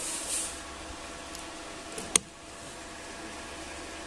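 Quiet, steady background hiss with one short, sharp click about two seconds in, in the pause between shots.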